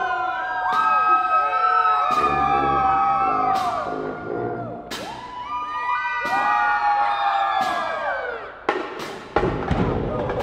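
High school marching band brass holding long chords that slide up and fall away, with sharp drum and cymbal hits through it and a quick cluster of drum hits near the end.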